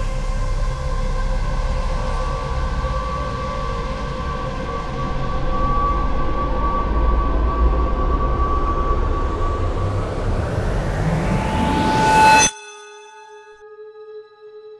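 Ambient drone music: several held tones over a deep rumble, swelling into a rising whoosh that cuts off suddenly near the end, leaving a quieter held ringing tone.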